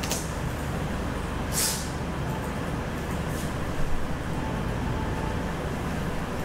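Steady low hum and hiss of room and sound-system noise, with a brief hiss about a second and a half in and a few faint clicks.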